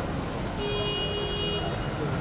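A vehicle horn sounds once, a single steady honk held for about a second, over constant outdoor background noise.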